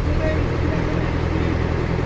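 Steady low drone of a riverboat's engine running at an even speed.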